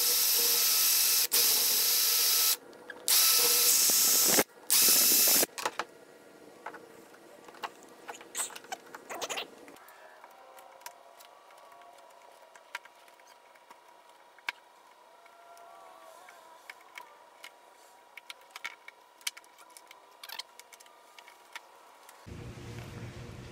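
Cordless drill spinning the kit's small router bit at high speed to cut the latch-plate recess in the door edge, in four bursts with short breaks over the first five seconds or so. After that, much quieter light scraping and scattered clicks of a wood chisel paring out the recess.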